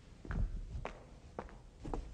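Footsteps on a hard floor: four soft steps about half a second apart.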